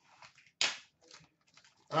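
A sports-card box being picked up and handled on a counter: a few short rustles and light clicks, the loudest a brief rustle a little over half a second in.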